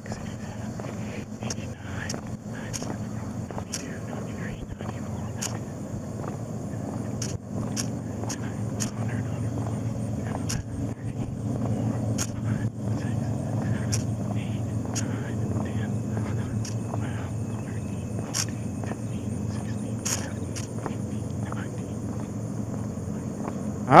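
Footsteps on a paved road as a man paces out distance, counting his steps quietly under his breath, over a steady low rumble.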